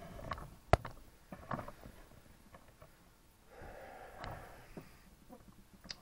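Handling noise: a few sharp clicks and light rustling, the loudest click less than a second in, with a short soft hiss near the middle.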